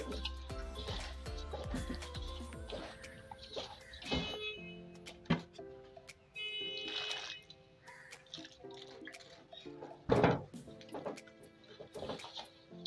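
Background music, with wet squelching and rustling of hands kneading a mash of wheat bran and crumbled oil cake in a metal tub, and a short loud splash of water poured in about ten seconds in.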